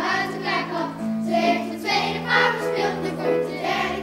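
A children's choir singing a Dutch-language song in unison over keyboard accompaniment, with long held notes under the voices.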